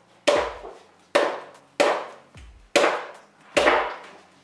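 A machete chopping a dried coconut husk on a wooden stool: five sharp chops, roughly one every three-quarters of a second, each dying away quickly.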